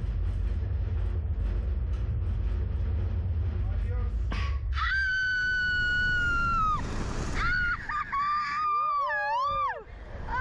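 A low steady rumble for the first four seconds, then riders screaming as a Slingshot reverse-bungee ride launches them upward. First comes one long, high, held scream about five seconds in, then more screams, the last ones wavering up and down near the end.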